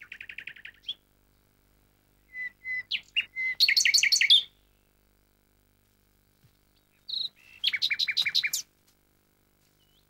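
A songbird singing in short, separate phrases of rapid repeated high notes: one phrase ends about a second in, the loudest comes around the middle, and another comes near the end.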